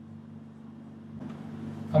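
Faint scratching of a marker writing on a whiteboard, growing a little more audible in the second half, over a steady low hum.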